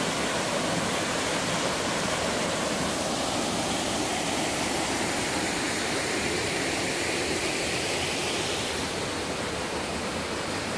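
Waterfall pouring down rock into a pool: a steady rush of water.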